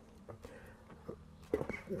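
A few faint plastic clicks as a power-steering fluid reservoir cap is twisted loose by hand, with a man's voice starting near the end.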